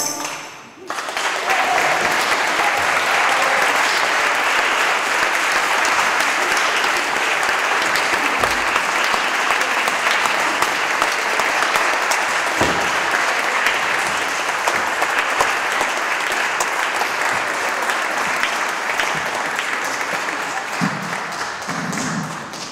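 Audience applauding steadily after a choir song; the song's last notes fade at the start and the clapping begins about a second later and carries on, easing slightly near the end.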